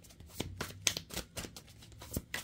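A deck of tarot cards being shuffled by hand: a run of quick, irregular light clicks and flicks of card on card.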